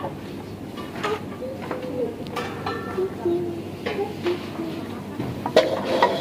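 Metal cookware being handled: a large aluminium pot and non-stick pans knocking and clinking against each other several times, with indistinct voices talking behind.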